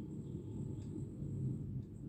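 Steel ladle stirring bottle gourd and spices frying in an aluminium pot, with a couple of faint scrapes against the pot over a low steady rumble.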